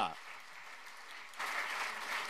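Audience applauding, faint at first and growing louder about one and a half seconds in.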